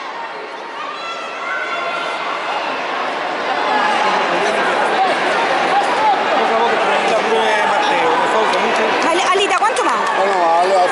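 Crowd chatter: many voices talking and calling out at once, swelling louder over the first few seconds and then holding steady.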